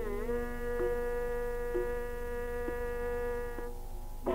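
Carnatic concert music holding one long, steady note over the tanpura drone, whose strings are plucked about once a second. The note fades near the end, and ornamented, sliding phrases start again just after.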